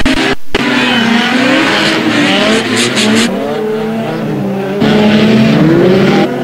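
Several rear-wheel-drive dirt rod race car engines running and revving on a dirt track, their pitch rising and falling as they go. The sound drops out briefly just after the start.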